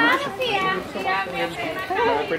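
Children's high voices chattering and laughing.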